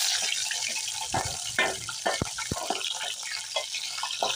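Mutton pieces sizzling loudly in hot oil as they begin to sear, with crackles from the fat and the spoon knocking and scraping against the aluminium pot as they are stirred.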